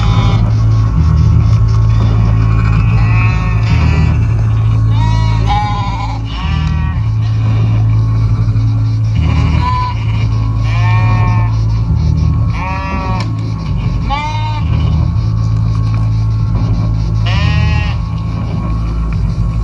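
Music: a low droning bass line that shifts pitch every few seconds, with repeated wavering sheep bleats laid over it, one every second or two.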